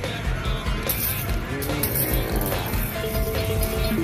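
Video slot machine's game music and electronic reel-spin sounds, with short melodic runs as the reels stop and a small line win registers near the end.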